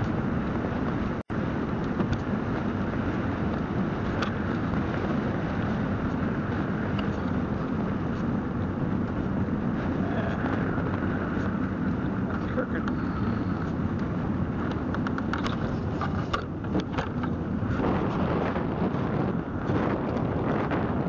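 Steady wind and road noise of a velomobile rolling along asphalt, a constant rushing rumble with wind on the microphone. The sound cuts out for an instant about a second in, and a few light clicks come near the end.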